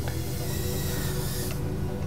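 Background music with a steady hiss under it.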